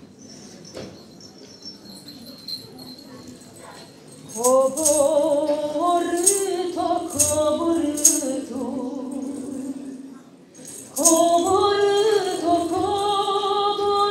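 A woman sings a solo Romanian Christmas carol (colind), starting about four seconds in. A few sharp jingling strikes on a hand frame drum punctuate the first lines. She breaks off briefly near the ten-second mark, then sings on.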